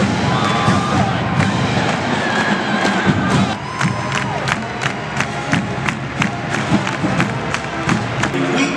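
A crowd cheering and shouting over a marching band's brass and drums. From about halfway through, sharp even beats come about three times a second.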